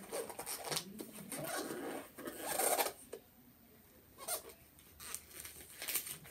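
Wrapping paper rustling and crinkling as a small gift box is unwrapped by hand, with a louder rip about halfway through and a few soft clicks of the box being handled.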